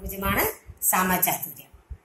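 Speech: a woman speaking Malayalam in two short phrases with a brief pause between.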